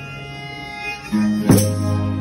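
Folia de Reis band playing: steady held chords over plucked guitars, with the chord changing about a second in and a single loud beat shortly after.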